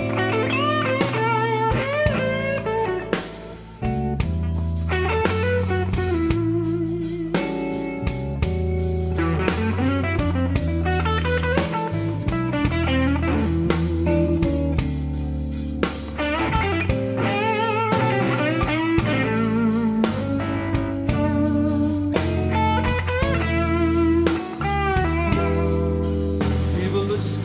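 Slow blues: an electric lead guitar plays bent notes with vibrato over bass and drums, an instrumental passage with no vocal.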